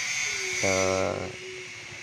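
A man's voice trailing off in a drawn-out hesitation ("na, uh"), over a steady faint hiss.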